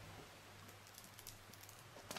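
Near silence with a few faint light clicks and taps from a beam compass and ballpoint pen being handled and moved about on plastic embossing film.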